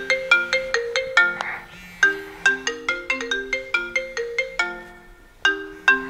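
Smartphone ringtone playing a marimba-like melody of quick, short notes in repeating phrases. The tune breaks off briefly about two seconds in and again about five and a half seconds in.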